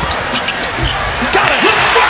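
Basketball game broadcast audio: a ball bouncing on a hardwood court among arena crowd noise, the crowd swelling a little past halfway through. A commentator's voice comes in near the end.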